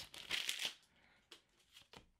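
Soft rustle of a foil trading-card booster pack wrapper and the card stack sliding out, lasting under a second. Then a couple of faint taps as the cards are handled.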